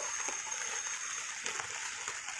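Steady splashing water noise, an even hiss with a few faint ticks.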